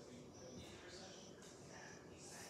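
Near silence: room tone with faint, indistinct speech.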